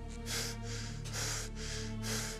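Tense background score: sustained low drone notes with short hissing pulses about twice a second.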